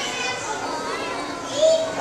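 A roomful of children chattering and calling out at once as they answer a question with raised hands, in a large school gym.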